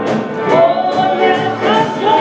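Live band playing a song: a voice singing over electric guitar and drums, with a steady beat.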